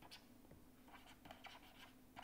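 Faint pen strokes scratching on paper as an equation is written by hand: a quick run of short strokes that thickens from about a second in.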